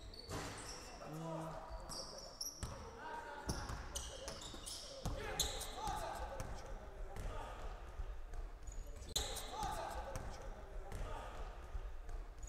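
Basketball being dribbled on a hardwood gym floor, a series of irregular bounces, with voices calling out in the background.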